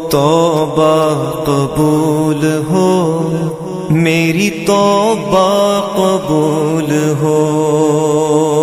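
Naat being sung: a single voice sliding and wavering through long melismatic phrases over a steady held drone. The voice stops about seven seconds in, leaving the drone.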